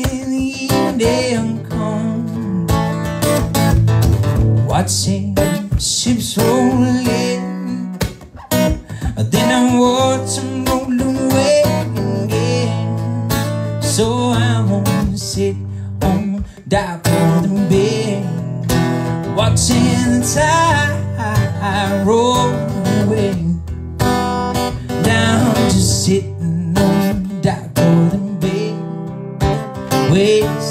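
A man singing while strumming an acoustic guitar, a live solo song with vocals and guitar together.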